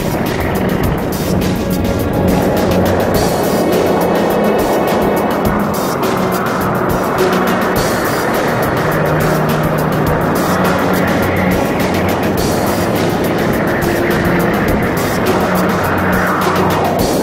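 Background music with a steady beat, mixed with a loud, even rushing noise.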